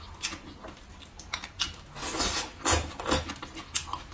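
Close-miked chewing of a mouthful of stir-fried greens: an irregular run of crunches and clicks, loudest around the middle.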